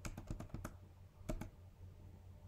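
Computer keyboard typing: a quick run of about half a dozen keystrokes in the first second, then two more a little later, as characters are deleted and a closing brace typed.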